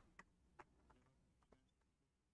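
Near silence: room tone with a few faint clicks in the first second, from the computer keyboard and mouse in use.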